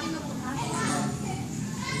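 Background chatter of children's voices in a schoolyard, steady and busy, with faint speech mixed in.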